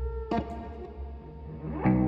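Experimental electric guitar duet with effects: a sharp plucked attack about a third of a second in, a rising pitch glide near the end, then a loud held low chord comes in.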